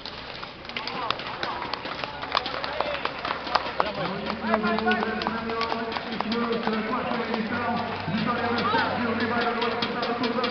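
A pack of road-race cyclists riding off from a start line at close range: a dense run of irregular clicks, typical of cleats clipping into pedals and freewheels ticking, mixed with voices of riders and spectators. A steady droning tone joins about four seconds in.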